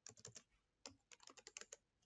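Faint typing on a computer keyboard: a short run of keystrokes, a brief pause, then a longer run starting just under a second in.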